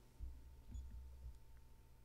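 Near silence: quiet room tone with a faint steady hum and a few soft, low bumps in the first second or so.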